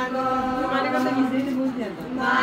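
A group of women singing together in unison, holding long notes. A phrase ends near the end with a brief break before the singing goes on.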